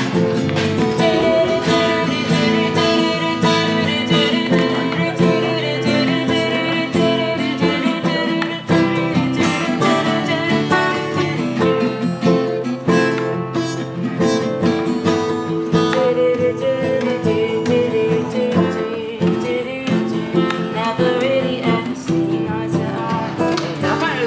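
A live rock band playing a continuous jam, with guitar prominent in the mix.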